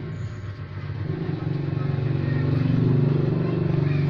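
Ingco 550 W paint spray gun turbine motor running as the suction source for a homemade cyclone dust separator: a steady low motor hum with air rushing through the hoses, swelling louder about a second in and peaking near three seconds.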